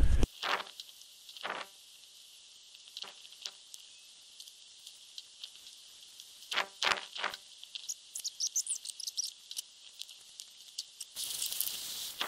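Scrubbing a boar jawbone with a scourer in a bucket of water, heard at a distance: a few faint scrapes, knocks and splashes. Birds chirp about eight seconds in over a steady high hiss, and a louder burst of hissing starts near the end.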